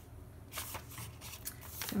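Paper pages of a thick journal rustling, with soft brushing and small clicks, as hands smooth and lift a page to turn it.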